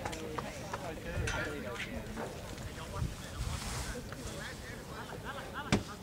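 Distant, unclear voices of players and spectators calling out across an open soccer field, over a low wind rumble on the microphone, with one sharp knock near the end.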